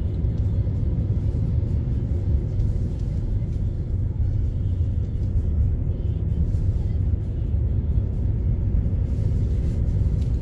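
Steady low rumble of a car driving, engine and road noise with no sudden events.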